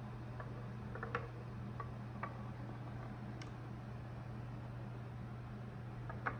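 A metal ball rolling slowly down the wooden zig-zag tracks of a gravity roller coaster, giving a few light clicks as it knocks against the wooden rails and stops, mostly in the first half, over a steady low hum.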